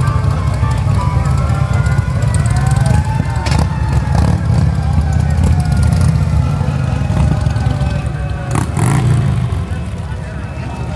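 Parade vehicles passing with a heavy steady low rumble, and several sirens wailing in slow rising and falling glides. A couple of brief knocks, one about a third of the way in and one near the end.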